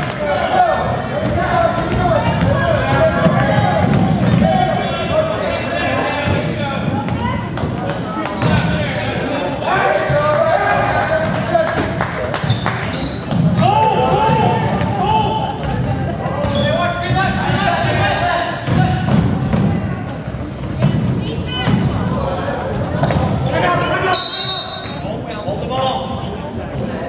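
Basketball being dribbled on a hardwood gym floor, the bounces echoing, amid continuous voices of players, coaches and spectators in a large gym. Near the end comes a short, high referee's whistle.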